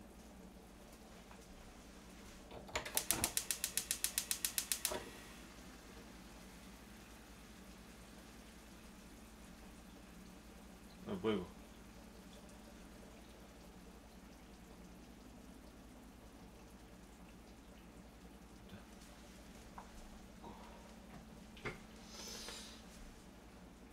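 Smartphone camera shutter firing in burst mode: a quick, even run of about twenty clicks, about nine a second for two seconds, a few seconds in.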